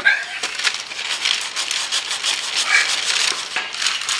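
80-grit sandpaper worked by hand over a painted car door jamb: irregular, scratchy rasping strokes as the blistered, peeling paint is sanded off.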